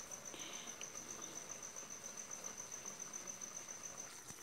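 A cricket trilling faintly and steadily: a high, rapidly pulsing tone.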